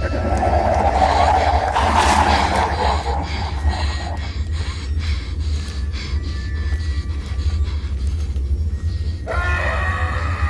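Horror film soundtrack: a constant low rumbling drone with eerie music over it, swelling loudest in the first few seconds. Near the end a voice starts to scream.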